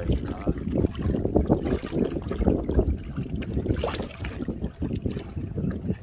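Water sloshing and splashing around a plastic basin of live fish as it is held in river water and tipped over to let the fish out, with a run of irregular splashes.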